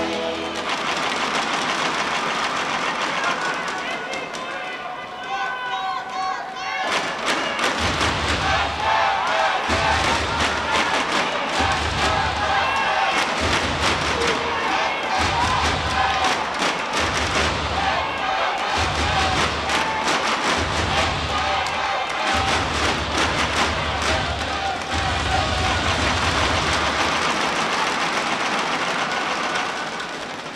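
Arena PA music and a voice over the hall's crowd noise during a break in a volleyball match. From about seven seconds in a heavy beat comes in roughly once a second with rapid clattering over it, and it eases off near the end.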